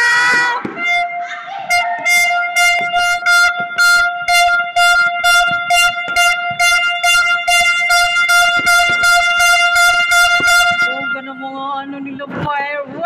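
A horn sounding one steady, unbroken note for about ten seconds, with a regular pulsing about three times a second laid over it, amid New Year's Eve noise.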